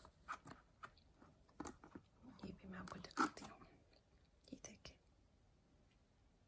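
Faint scattered clicks, taps and rustles of high-heeled shoes being handled and moved about, the loudest a sharp tap about three seconds in.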